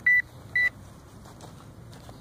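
Two short, loud electronic beeps at one high pitch, about half a second apart, from a metal detector being used to check a freshly dug hole for the target.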